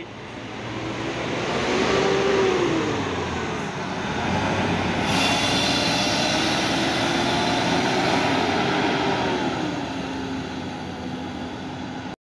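Intercity coach's diesel engine running as the bus pulls past and drives away, its pitch rising and falling with the throttle. The sound builds over the first two seconds and eases off near the end.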